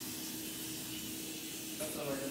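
Steady hiss of room tone with a faint low hum, and a brief faint sound near the end.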